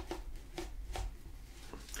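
Close-up handling of a paper takeaway tea cup as the tea bag is lifted: a few soft taps and rustles, scattered irregularly.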